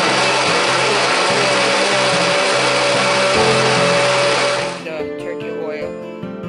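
KitchenAid countertop blender running steadily on a jug of red vegetable purée, cutting off about five seconds in. Background acoustic guitar music runs underneath and carries on alone after the blender stops.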